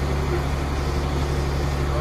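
Truck's diesel engine idling steadily, heard from inside the cab, a constant low hum. It is running to charge the air-brake system up toward the governor's 120–125 psi cut-out.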